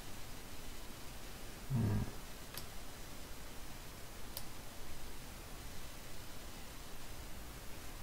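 Faint steady room hiss, with a short low hum of a man's voice about two seconds in and two faint clicks of a computer mouse soon after.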